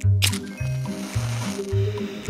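Background music with a pulsing bass line, over a cartoon sound effect: a sharp strike right at the start, then a steady hiss like a lit fuse burning.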